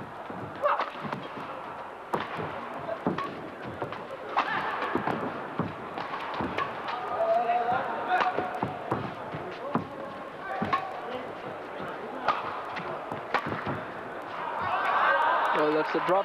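Rackets hitting a shuttlecock back and forth in a badminton rally, a sharp hit about every second, over arena crowd murmur. Near the end the crowd noise swells as the rally ends.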